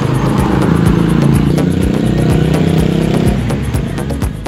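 A motor vehicle's engine running close by on the road, a steady hum that fades out a little before the end, over music with a steady beat.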